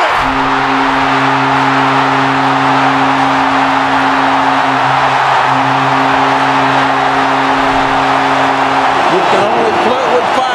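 Stadium crowd roaring for a go-ahead home run, with a steady low droning tone held over the roar that cuts off about a second before the end.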